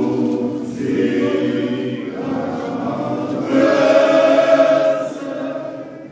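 Men's church choir singing together in harmony, in long held phrases. The singing swells about halfway through and fades near the end.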